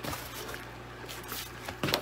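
A cardboard book subscription box being handled, with a click as it starts to move, faint rustling and a sharp knock of the box near the end, over a low steady hum.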